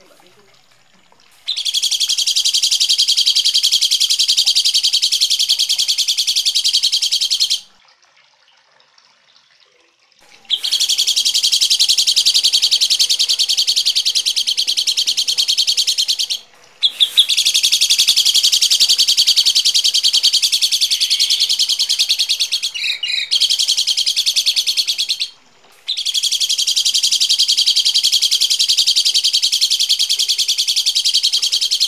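A songbird's harsh, rapid, high-pitched chattering, delivered in four long unbroken bursts of several seconds each with short pauses between them.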